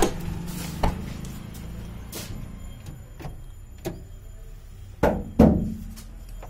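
A few knocks and thumps from handling a car door and body, with the two loudest close together near the end.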